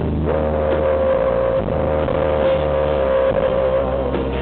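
Live rock band playing an instrumental passage: an electric guitar slides up into one long sustained note and holds it for about three and a half seconds over steady bass and drums.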